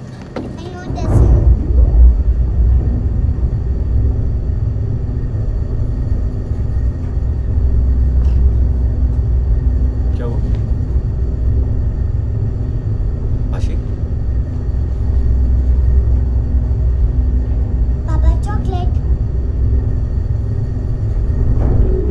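Loud, low, steady rumbling drone of a film's tense sound design, swelling in about a second in and holding without a break.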